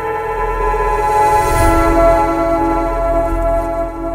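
Logo sting: a held synthesized chord of several steady tones swelling in, with a deep low boom and a rising hiss peaking about a second and a half in, easing off near the end.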